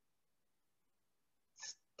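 Near silence: room tone, with one short, soft breath-like sound near the end.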